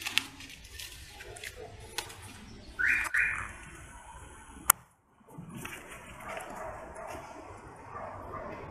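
Sheets of paper burning in a copper brazier, the fire crackling in scattered sharp clicks. About three seconds in come two short, louder high-pitched sounds in quick succession, and a single sharp snap just before a brief gap.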